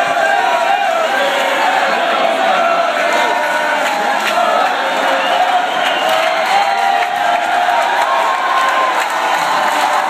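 Large concert crowd cheering, many voices yelling at once.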